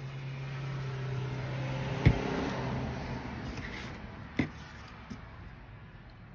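Liquid glue squeezed from a plastic bottle onto cardstock and paper handled: a soft noise that swells and then fades over several seconds. A steady low hum stops with a sharp click about two seconds in, and another click comes a little past four seconds.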